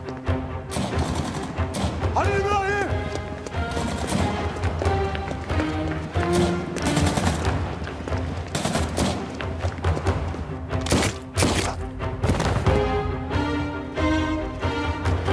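Dramatic film-score music with long held notes, under a series of gunshots that come in scattered single cracks, most of them in the second half.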